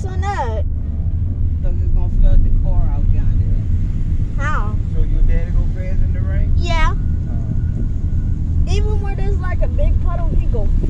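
Car interior with a window open: a steady low rumble of road and wind noise, with short bursts of voices, one high-pitched, rising through the middle.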